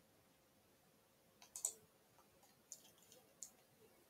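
Near silence broken by a handful of light, faint clicks, the loudest pair about a second and a half in and a few more spread through the second half.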